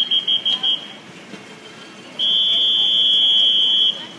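Swimming referee's whistle: four short blasts, then one long blast of nearly two seconds. These are the signals that call the swimmers to the blocks and then send them up onto them before the start.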